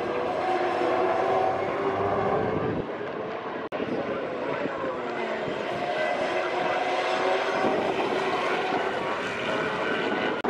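V8 Supercar engines running hard as the cars go through the corner, their pitch rising and falling with the throttle and gear changes. The sound breaks off suddenly for an instant just over a third of the way through.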